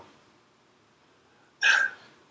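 Near silence, then a short, sharp intake of breath near the end.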